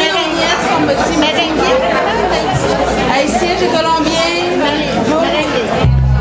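Several people talking close by, overlapping chatter with little or no music under it.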